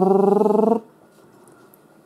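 A man's voice holding one steady, rough, pulsing vocal note as a mock sound effect, cutting off abruptly a little under a second in.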